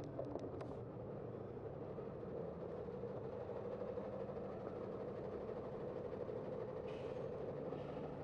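Steady hum of idling vehicle engines in slow city traffic, with a box truck close alongside. A few light clicks come at the start and a brief hiss near the end.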